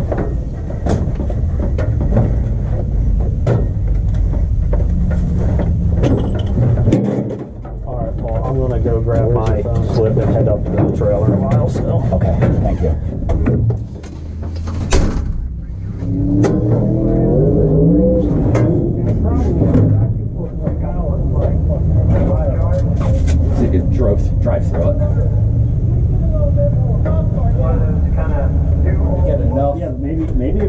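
Indistinct talking over a steady low rumble, with scattered clicks and one sharp knock about halfway through.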